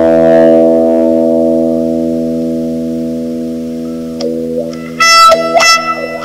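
Electric guitar bowed with a cello bow, through an effects unit: one long sustained note slowly fades over about four seconds, then louder, brighter strokes come in about five seconds in.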